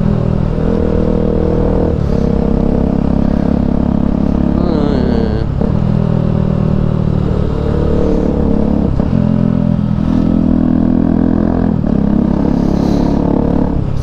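Motorcycle with an aftermarket Akrapovic exhaust riding on the road, its engine note running steadily and stepping in pitch every few seconds as it pulls and eases.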